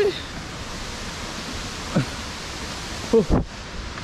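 Steady rushing of falling water from a waterfall, an even hiss with no rhythm, with a few brief wordless vocal sounds over it near the start, about two seconds in and about three seconds in.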